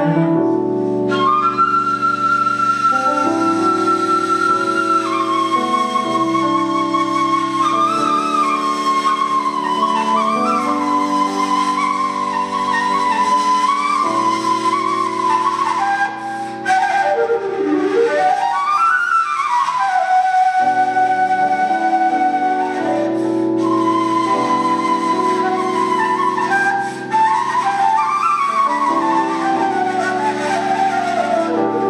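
Bulgarian kaval, an end-blown wooden shepherd's flute, played live: a long ornamented melody of held notes and quick turns, with a swooping glide down and back up around the middle. Lower held notes sound beneath it.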